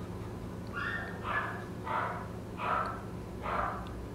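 A Shih Tzu giving five short, raspy whimpers, a little under a second apart, over a steady low room hum.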